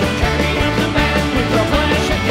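Celtic punk band playing live: fiddle, accordion, guitars and bass over a steady drum beat.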